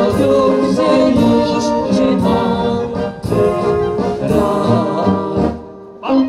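A man and a woman singing a slow song together, accompanied by a brass band. The music breaks off about five and a half seconds in, leaving a brief quiet gap.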